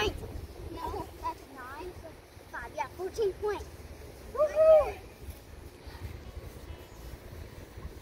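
Girls' voices in short exclamations and scattered words, the loudest a rising-and-falling call about four and a half seconds in, over a low rumble of wind on the microphone.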